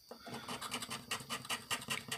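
The edge of a round disc scraping the latex coating off a scratch-off lottery ticket in rapid, repeated strokes.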